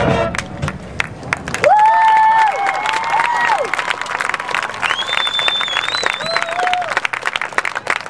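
Audience applauding and cheering at the end of a marching band's performance, as the band's last chord fades in the first second or two. Long, high whoops rise over the clapping twice, a little after the start and again past the middle.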